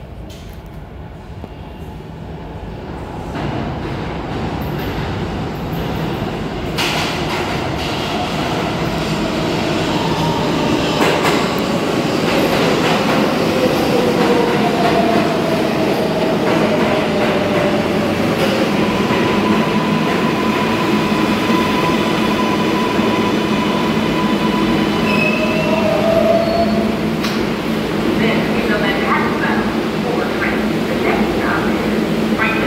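R142A New York subway train arriving at a station. It grows steadily louder as it approaches through the tunnel, then rumbles alongside the platform while its motor and brake tones slide down in pitch as it slows to a stop.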